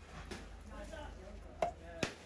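A knife chopping through a chunk of wallago catfish onto a wooden chopping block, one sharp knock near the end.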